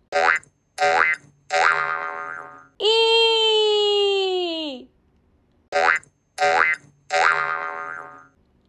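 Cartoon voice-like sound effects in a repeating pattern: three short pitched calls, then a long held tone that slides down at its end, with the pattern starting over partway through.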